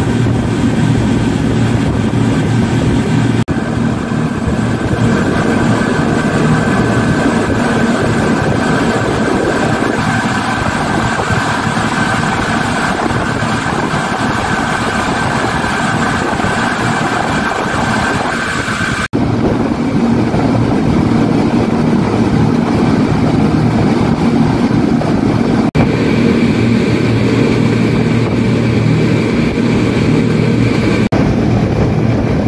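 Six Yamaha 250 hp outboard motors running together at high speed: a steady engine drone over the rush of the boat's wake, with a few brief dropouts.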